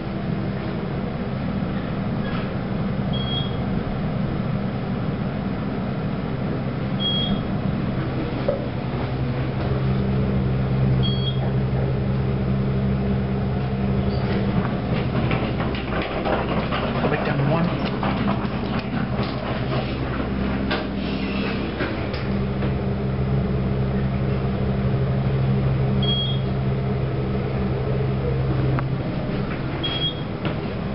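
Haughton traction elevator running, heard from inside the cab: a steady low hum that swells in two stretches while the car travels. Short high beeps sound about five times. A stretch of clattering in the middle comes with the car stopped at a floor with its doors open.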